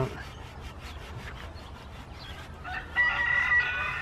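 A rooster crowing once in the last second or so, a single steady, held call.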